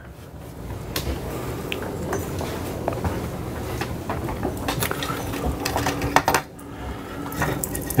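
Handling noise from a power cord and plug being worked on a countertop: scattered clicks and knocks over a steady rushing background, the clicks thickest just past the middle.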